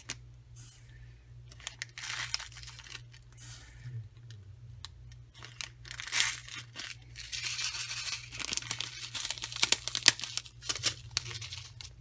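Plastic crinkling and many small sharp clicks as tiny clear glass fillers are put by hand into a clear plastic shaker-card pocket. The clicks and crackles come thicker from about halfway through.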